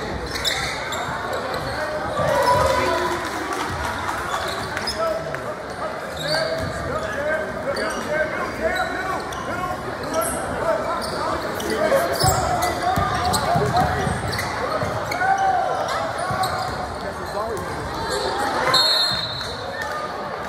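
Basketball game in a gymnasium: many overlapping voices of players and spectators calling out and chattering, with a basketball bouncing on the court, all echoing in the large hall.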